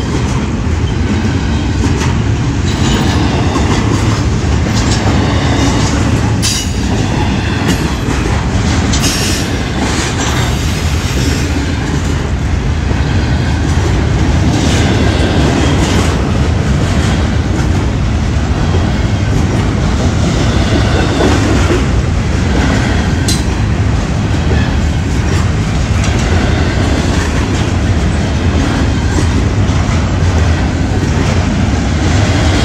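Freight train cars rolling past at close range: a loud, steady rumble of steel wheels on rail, with a few sharp clicks over the rail joints.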